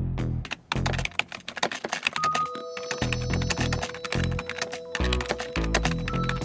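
Background music with a repeating low bass beat, under a rapid run of keyboard-typing clicks used as a sound effect for on-screen text being typed out. Held tones join the music about two and a half seconds in.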